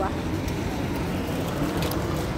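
Steady low rumble of outdoor street background noise.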